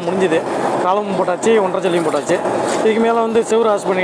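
People talking, with a few short clicks.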